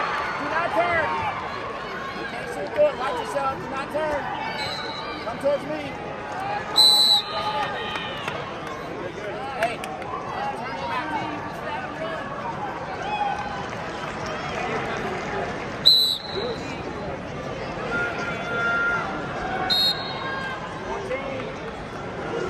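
Arena crowd chatter and shouted voices around a wrestling mat, with short, sharp, high whistle blasts from the referee about seven and sixteen seconds in, as the action is stopped and restarted.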